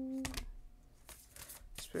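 A deck of Moonology oracle cards being handled and a card drawn: a few light, scattered flicks and snaps of card stock. The tail of a drawn-out "ooh" fades in the first moment.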